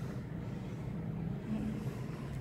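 A steady low mechanical hum with a low rumble underneath.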